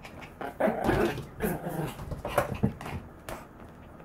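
Maltese dog making playful growling 'gau-gau' noises in several short bursts, dying away about three and a half seconds in.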